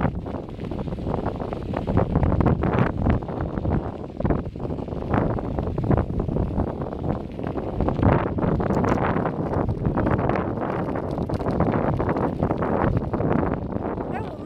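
Wind buffeting the microphone: a loud, gusty rumble that keeps rising and falling.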